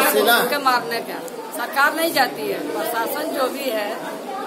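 Speech: a woman speaking Hindi, with chatter from people around her.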